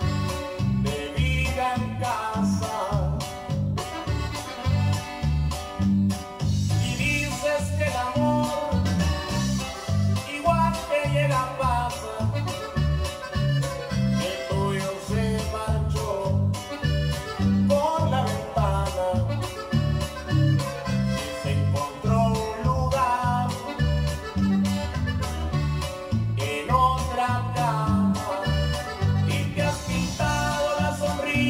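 Five-string electric bass playing a steady, rhythmic line of low notes along to a Latin-style backing track whose melody sits well above it.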